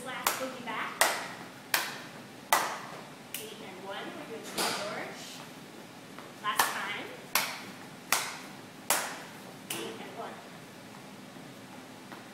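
Sharp percussive hits kept on a steady dance beat, about one every three-quarters of a second: five in a row, a pause of about three seconds, then five more. A voice sounds briefly in the pause.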